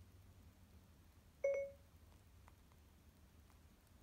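A single short electronic chime from the iPad's speaker about one and a half seconds in: the Siri tone, set off by holding the home button. A few faint clicks follow.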